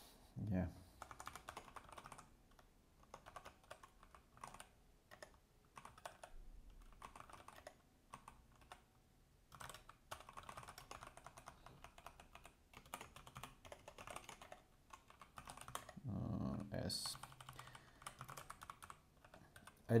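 Typing on a computer keyboard: faint key clicks in irregular runs, broken by short pauses.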